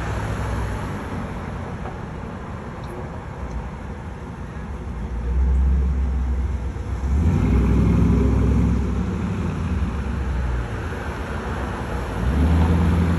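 Street traffic heard from above: car engines running and cars passing on the road, with a steady low rumble that swells about halfway through, when one engine is loudest for a few seconds.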